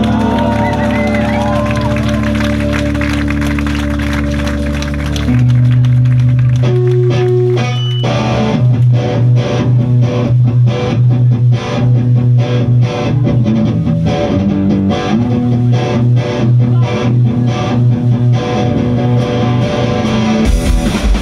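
A live band's distorted electric guitars. Held, ringing chords sustain for the first few seconds, then from about eight seconds in the guitar settles into a steady, rhythmic strummed figure.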